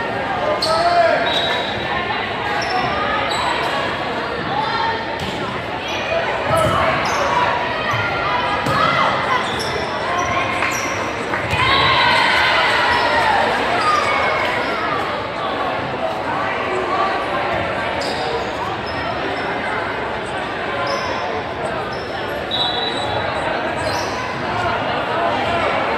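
Indoor volleyball play in a reverberant school gym: the ball being struck again and again, brief sneaker squeaks on the court, and players calling and spectators shouting. The voices are loudest around twelve seconds in.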